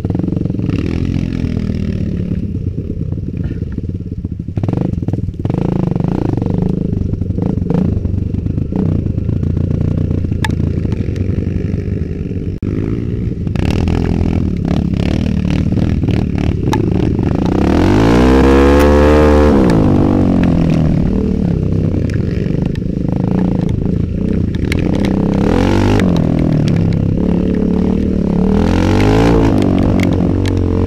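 Kawasaki KLX 150 trail bike's single-cylinder four-stroke engine under way off-road, its revs rising and falling with the throttle, along with clatter from the bike over ruts. About eighteen seconds in the revs climb sharply and drop back, the loudest moment.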